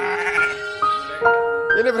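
Background music with held notes. A week-old premature Texel lamb bleats over it in the first half-second.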